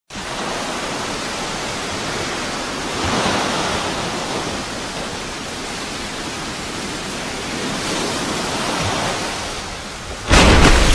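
A steady rushing hiss with no tones in it, swelling slightly about three seconds in and again near the end.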